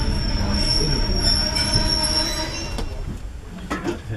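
Railway coach rolling slowly through a station with a steady high-pitched squeal from the wheels as the train brakes, over the low rumble of the running gear. The squeal fades away near the end.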